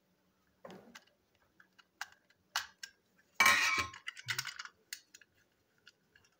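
Plastic toy-train parts being handled and taken apart on a tabletop: scattered small hard clicks, with a louder scraping rattle about three and a half seconds in.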